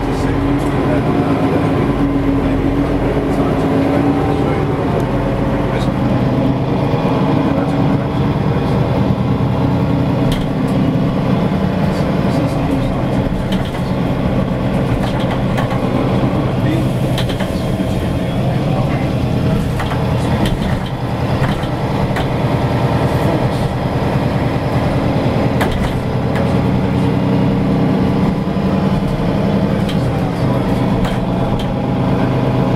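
Interior running noise of a moving city transit vehicle: a steady drive hum with road noise, its pitch rising and falling gently a few times.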